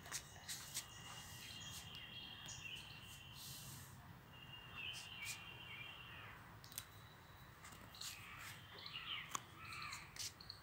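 Birds calling faintly: a few drawn-out whistled notes, then short chirps near the end, over a low outdoor hum, with a few sharp clicks.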